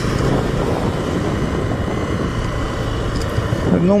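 Motorcycle engine running steadily at low road speed, with a continuous rush of wind and road noise.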